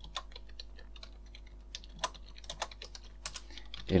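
Computer keyboard typing: a run of irregular keystrokes as a short line of text is entered, over a faint steady low hum.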